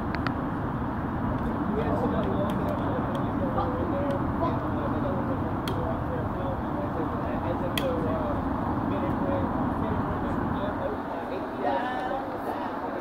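Steady low rumble of a vehicle engine running close by, easing off about a second before the end, with faint indistinct voices in the background.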